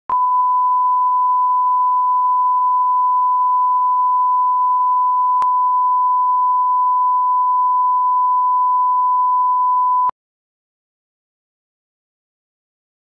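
Broadcast line-up test tone: a steady 1 kHz reference tone played with colour bars at the head of a TV programme tape. It holds one unchanging pitch and cuts off suddenly about ten seconds in.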